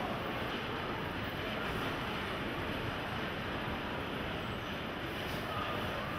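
Steady rumbling background noise of a large hall, even throughout with no distinct events.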